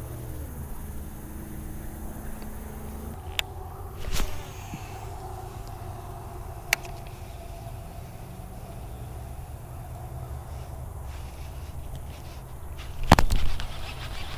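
Baitcasting reel being cranked to retrieve a fast-worked chatterbait, under a steady low rumble of handling noise on the hand-mounted camera, with a few sharp clicks. Near the end there is a loud burst of handling noise as the rod is swept up.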